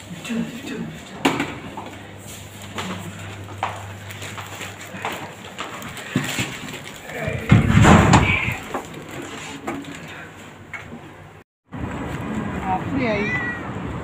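A microphone rubbing against clothing makes a loud burst of rustling about eight seconds in. Before it come scattered clicks and knocks over a low steady hum. After a sudden dropout, a few short pitched calls are heard.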